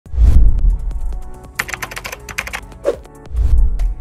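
Intro music sting: a deep bass hit, then a quick run of typing-like clicks over faint sustained tones, then a second deep bass hit just before the narration.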